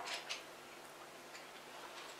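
A quiet room with a low hiss and a few faint clicks in the first half second, and one more faint click later.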